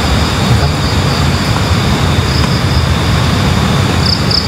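Steady loud rushing noise with a low rumble, and a steady high-pitched hum above it.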